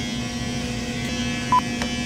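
Electric hair clippers buzzing steadily while cutting hair close to the scalp. A short high beep sounds once, about one and a half seconds in.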